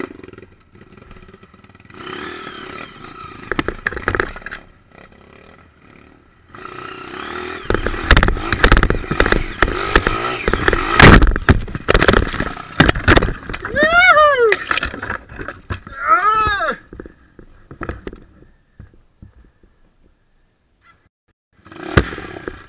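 Dirt bike working over rock: a loud, uneven stretch of engine noise with knocks and clatter in the middle, including two short rising-and-falling sweeps in pitch about two seconds apart. The sound then drops away to near quiet for the last few seconds.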